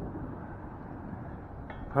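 Quiet, steady outdoor background noise, mostly low in pitch, with no distinct event.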